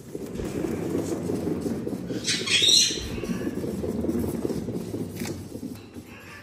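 Cat exercise wheel rolling with a steady low rumble as a Bengal cat runs in it, the rumble starting at once and dying away near the end. A short, high squeak sounds just before the middle.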